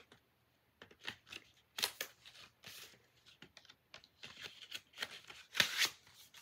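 Plastic Blu-ray and DVD cases being handled, giving a string of irregular clicks and rustles, with the loudest rustle near the end.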